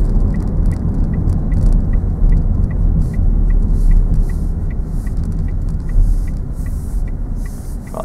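Inside a car on the move: a steady engine and road rumble with the turn indicator ticking evenly, about two and a half ticks a second, signalling a left turn.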